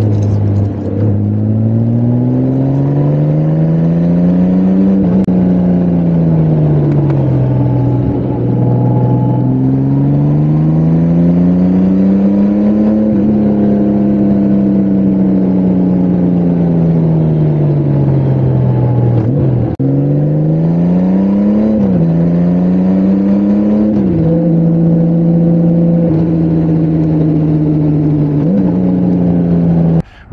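A touring motorcycle's engine is heard from an onboard camera while riding. The pitch climbs under acceleration and eases back off the throttle several times. About two-thirds of the way through it drops sharply at a gear change, then settles into a steady cruise near the end.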